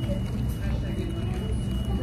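Steady low rumble of background room noise, with a thin constant high whine and faint, indistinct voices.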